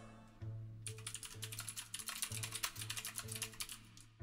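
Rapid typing on a computer keyboard, a quick irregular run of key clicks starting about a second in, over soft background music.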